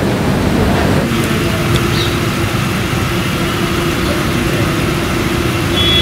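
Steady loud background noise with a constant low hum joining about a second in.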